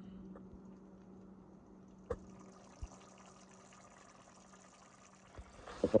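Faint bubbling of a pot of tomato and venison chili simmering on the stove, over a low steady hum that stops near the end, with a couple of small clicks about two and three seconds in.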